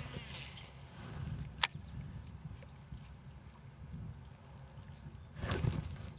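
Low, uneven wind rumble on the microphone over open water, with one sharp click about a second and a half in and a short rush of noise near the end.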